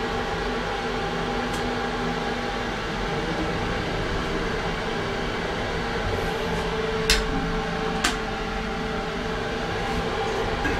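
Kidemet 2000 traction elevator travelling down, heard from inside the cab: a steady hum of the moving car, with two sharp clicks about a second apart near the end.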